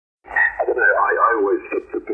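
A man's voice received on 20 m single-sideband and played through a Yaesu FTDX3000 transceiver's speaker: a strong, thin-sounding voice with no bass or treble, starting about a quarter second in.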